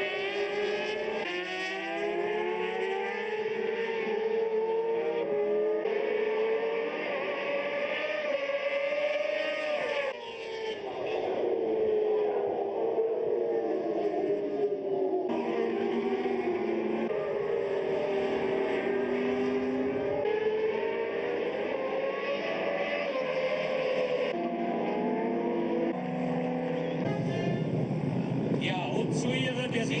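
Supersport racing motorcycle engines at speed, their pitch rising and falling as the bikes accelerate and slow, with the sound changing abruptly several times. For the last few seconds a rougher noise without a clear engine note takes over.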